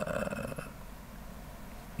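A man's drawn-out hesitation vowel, a held "wa…" into the microphone, trailing off under a second in, then a quiet pause with room noise.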